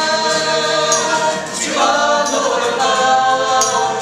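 Small mixed group of men and women singing a worship song together in harmony, holding long notes that move to new pitches a little under two seconds in, with acoustic guitar and tambourine accompaniment.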